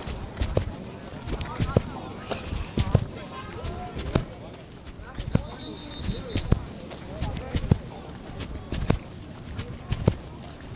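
Muffled, irregular thumps and rubbing of clothing against a phone's microphone, roughly one or two thumps a second, as the person carrying it walks. Indistinct voices can be heard in the background.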